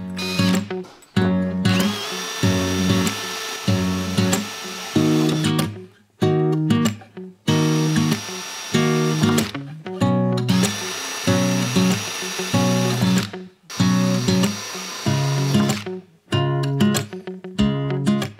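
Background guitar music over a cordless drill with a diamond tile bit boring holes through a thick ceramic vase, the drill's high whine coming in several stretches.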